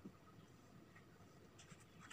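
Faint marker-pen strokes on a whiteboard, a few soft small sounds over near silence.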